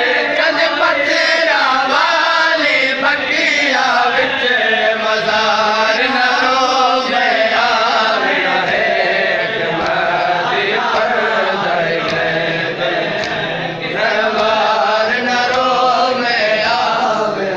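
Group of men chanting a nauha, a Shia mourning lament, together in unison without instruments.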